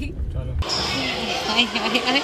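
A low car-cabin rumble for about half a second, then an abrupt switch to many schoolchildren chattering and calling out together in a large hall.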